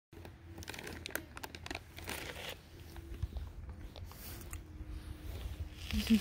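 Close-up crunching and chewing of a crisp snack: an irregular run of small crackles and clicks.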